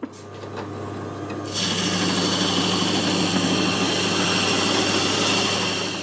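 Spindle sander's motor running with a steady hum; about a second and a half in, a loud hiss joins it as the abrasive sleeve on the drum sands the walnut board's edge, holding steady until it cuts off.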